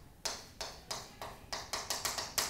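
A stick of chalk writing on a chalkboard: a quick run of short taps and scrapes, several strokes a second, as letters are formed.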